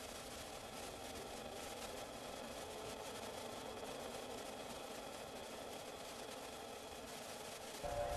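Faint, steady droning soundscape with several held tones over a soft hiss, the soundtrack of a dance-theatre performance film.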